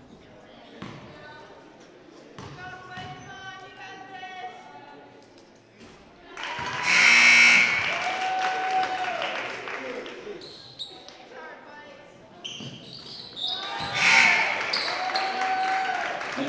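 A basketball bouncing on a gym's hardwood floor amid spectators' voices, with two loud bursts of crowd cheering and shouting, one about seven seconds in and one near the end.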